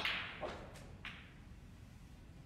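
Snooker balls clicking: a sharp crack of the cue ball striking the blue at the start, a duller knock about half a second in as the blue drops into the pocket, and a further click about a second in.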